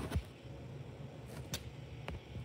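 Faint handling noise from a hand moving close to a phone's microphone: a steady low hum with two brief clicks, one just after the start and a sharper one about one and a half seconds in.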